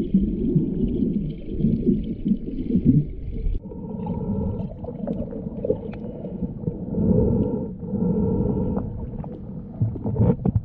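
Muffled underwater sound from a submerged action camera: low water rushing and sloshing that swells and fades. It changes abruptly about three and a half seconds in, and faint steady tones come in.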